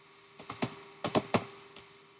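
Computer keyboard typing: a quick run of about seven sharp keystrokes in two bunches, with one fainter keystroke near the end.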